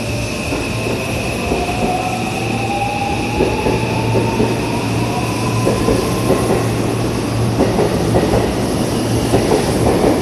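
Seibu 001 series Laview electric train accelerating away from the platform. Its motor whine rises steadily in pitch over the first six seconds or so, while the clicks of the wheels over rail joints come faster and louder as it gathers speed.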